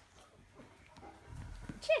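Two Maine Coon kittens wrestling on a soft fleece cat bed: faint scuffling and soft bumps, then a dull low rumble about a second and a half in. Near the end comes a high, falling voice.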